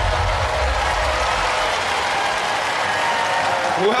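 Studio audience cheering and applauding: a dense, even wash of clapping and shouting voices.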